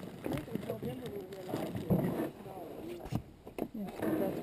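Indistinct conversation between people, with a few sharp clicks near the end.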